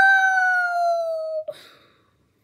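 A girl's high, drawn-out whine of effort, one long note that slides slowly down and breaks off about a second and a half in, while she works a necklace clasp with her teeth. A small click and a breath follow.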